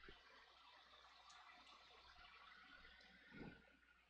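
Near silence: faint room tone with a soft hiss, and one brief low bump about three and a half seconds in.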